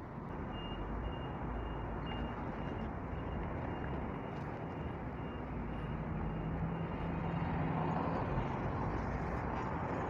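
Road and engine noise heard from inside a car in traffic, a steady hum that grows slightly louder after the middle. A faint, high beep repeats quickly through the first half.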